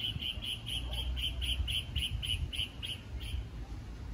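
A small animal's high chirp, repeated rapidly and evenly about four times a second, which stops about three seconds in. Under it is a low wind rumble on the microphone.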